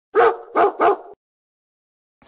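A dog barking three times in quick succession, then stopping.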